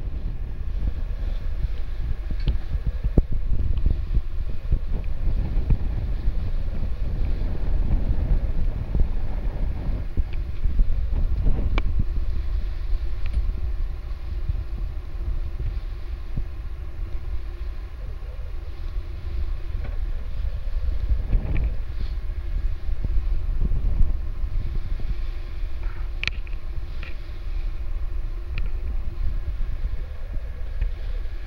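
Wind buffeting the microphone over the rush of water past a sailing catamaran's hulls as it moves through the waves at sea. There are a few sharp knocks, one about 12 seconds in and another near 26 seconds.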